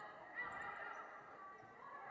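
Faint gymnasium ambience during a volleyball rally, with a brief faint squeak about half a second in.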